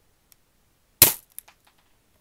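A single shot from a Daisy Red Ryder lever-action BB gun: one sharp pop about a second in, followed by a couple of faint ticks.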